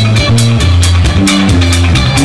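A live band plays instrumental jam-rock/electronica. An electric bass holds low notes that shift about every half second under a busy, steady drum-kit beat.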